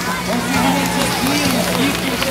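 Onlookers' voices chattering over a steady rushing hiss of flyboard water jets and a constant low hum from the personal watercraft engine that drives them.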